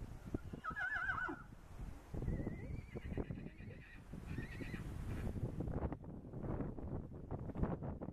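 A mare and a pony whinnying back and forth to each other, three quavering whinnies in the first half.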